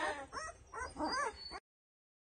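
Ten-day-old Doberman puppies whimpering and squealing: several short, high cries that rise and fall. The sound cuts off suddenly near the end.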